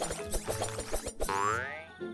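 Cartoon pumpkin-carving sound effect, a rapid run of short chopping clicks, then a falling swoop, over children's background music.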